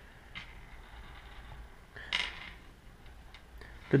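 A few faint light clicks of small steel machine screws being picked up and set down on a tabletop, with a brief rustle about two seconds in, over a low steady hum.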